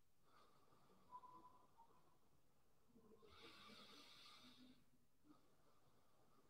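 Near silence with one faint, slow deep breath about three seconds in, lasting around a second and a half. There is also a brief faint high tone about a second in.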